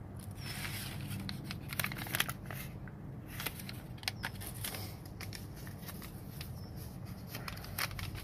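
Paper seed packets rustling and crinkling as seeds are handled and picked over in a plastic tray, with many small scattered clicks and ticks.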